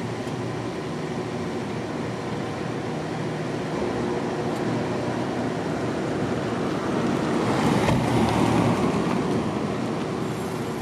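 A steady car engine hum, swelling as a car drives past close by, loudest about eight seconds in, then easing off.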